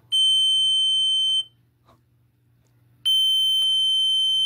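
Small electronic device beeping when its ends are squeezed: two long, steady, high-pitched beeps of just over a second each, the second about three seconds after the first.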